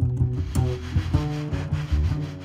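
Live chamber-jazz quartet: a double bass plucked in a line of low, separate notes, with a steady hiss from the drum kit joining about half a second in.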